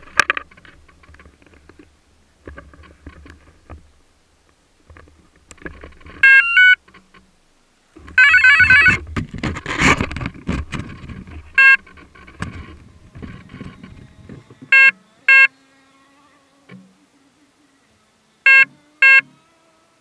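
An electric RC helicopter's electronics beeping as it is readied, over handling knocks and rustles. A pair of beeps comes about six seconds in, then a warbling run of tones, then single and paired loud beeps, with a faint steady hum in the last few seconds.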